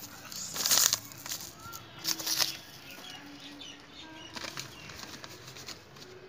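Dried cineraria seed heads crushed and rubbed by hand on a sheet of paper: dry rustling and crackling of chaff against the paper, in two louder bursts about half a second and two seconds in, then softer intermittent rubbing.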